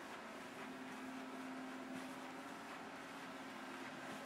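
Faint room tone: a steady hiss with a low, even hum underneath.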